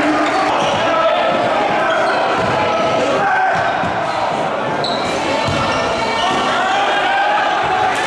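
A basketball bouncing on a gym's hardwood court during play, with irregular thuds under steady crowd voices and shouting that echo in the hall.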